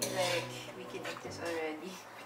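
Quiet voices in a small kitchen with a few faint clinks of cookware.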